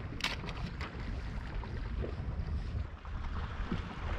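Wind rumbling on the microphone by the sea, with a steady wash of sea and surf behind it. A few brief clicks come within the first half-second.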